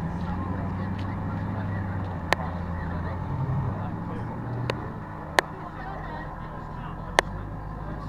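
Engine of a Humdinga amphibious vehicle running with a low, steady hum as it drives into the lake, fading away about five and a half seconds in. A few sharp clicks sound over it.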